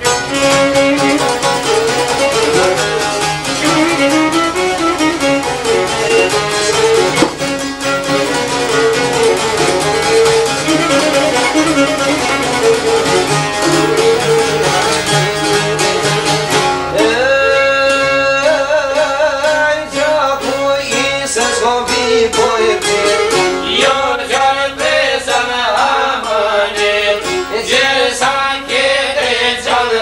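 Albanian folk ensemble of long-necked plucked lutes and a violin playing a lively tune together. From about halfway through, a man's singing voice comes in over the instruments.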